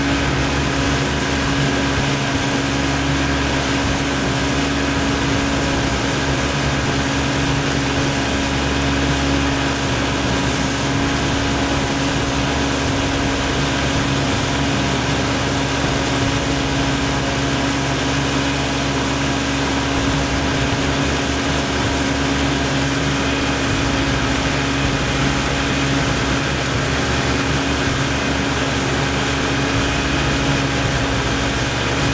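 Motorboat engine running steadily under way, holding a constant pitch and level throughout.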